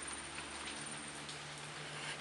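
Steady, even hiss of background noise, like light rain, under a low steady hum, with a few faint soft clicks from fingers pulling the pit out of a peeled lychee.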